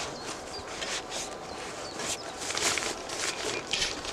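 Nylon backpack fabric rustling and rubbing in irregular scrapes as a tarp is stuffed and pressed down into the pack's front pouch.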